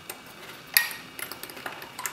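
Small metal clicks as brass lever plates are fitted back onto their post inside an opened Sargent & Greenleaf mailbox lever lock. There are several light ticks, and one sharper click with a brief ring about three-quarters of a second in.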